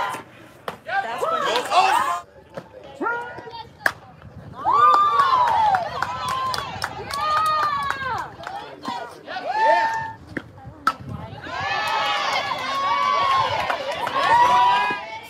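Spectators and players cheering and shouting, mostly high voices in long drawn-out calls, with a few sharp knocks among them.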